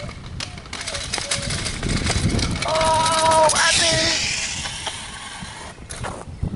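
Kick scooter's wheels rolling over asphalt, growing louder as the rider comes up to the camera and then fading. A brief shout or cry rings out about three seconds in.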